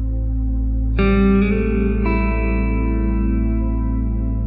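Ambient background music over a steady low drone, with plucked notes entering about a second in and ringing out as they slowly fade.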